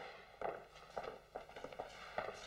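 Footsteps and shuffling on a hard floor: several uneven steps as people are moved about.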